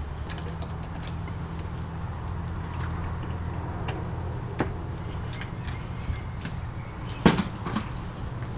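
A person dropping onto a stone pool deck in a pretended fall: one sharp thud about seven seconds in, followed by a smaller knock, over a steady low hum with faint scattered ticks.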